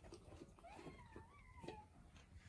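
Faint, short wavering whine from a Samoyed puppy as it noses into an empty stainless steel food bowl, with a few light ticks of muzzle against metal.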